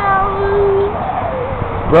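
Young boy crying in pain: one long held wail of about a second, then a shorter wavering whimper.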